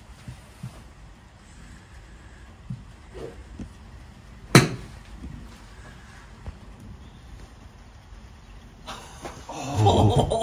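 A single sharp crack about halfway through: a wedge striking a golf ball cleanly off a driving-range mat.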